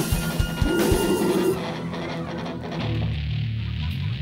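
Live rock band playing, with electric guitar and drums. Sharp drum hits come in the first second or so, then the high end falls away after about a second and a half, leaving low, sustained bass and guitar notes.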